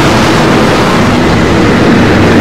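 Sci-fi spaceship engine sound effect: a loud, steady rushing noise with a low hum underneath.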